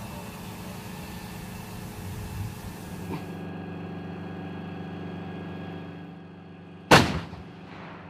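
An M109 self-propelled howitzer's 155 mm gun firing once, about seven seconds in: a single sharp, very loud blast that dies away over about a second. Before the shot a steady, many-toned hum holds throughout.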